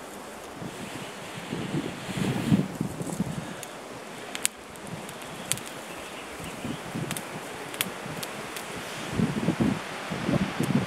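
Breath blown in strong gusts into a smouldering grass tinder bundle lit with an amadou ember, coaxing it into flame during the first few seconds. Then the bundle burns with a few sharp crackles, and there is more rustling near the end.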